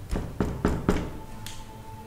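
Knuckles knocking on a wooden door: four quick raps in about a second, then a fainter one, over a soft background music score.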